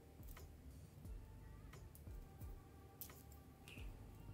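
A few faint, scattered clicks of pearl and round beads knocking together as a beaded bag is handled and threaded with fishing line.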